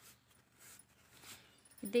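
Faint rustling of cotton fabric as elastic is worked through a hem casing with a safety pin. A woman's voice starts near the end.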